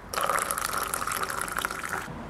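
Coffee poured in a thin stream into an enamel mug, a steady trickling splash of liquid filling the cup. It starts just after the beginning and eases off slightly near the end.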